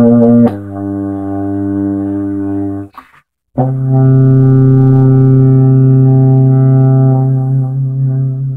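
Solo euphonium: a short note, then a lower note held for about two seconds, a brief break for breath, then a long low note held and fading near the end.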